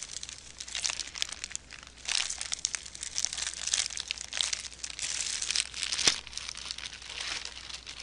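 Plastic specimen bag being tucked into a Ziploc bag, crinkling and rustling throughout, with a single sharp click about six seconds in.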